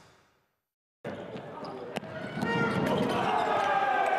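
Basketball game sound in an arena. The tail of an intro jingle fades out, there is a short gap, and then courtside sound comes in with a single ball bounce on the hardwood about two seconds in. A commentator's voice and crowd noise grow louder over the second half.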